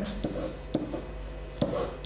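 Whiteboard marker drawing arrows on a whiteboard: a few short strokes and taps of the tip against the board.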